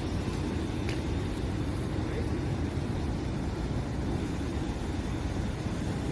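Steady low rumble of nearby road traffic, with no distinct events.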